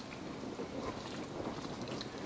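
Quiet, steady background hiss with faint soft handling sounds of gloved hands pulling apart tender smoked beef on a wooden cutting board.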